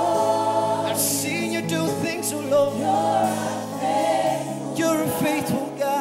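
Live gospel praise music: a lead singer and choir singing over held notes from the accompaniment.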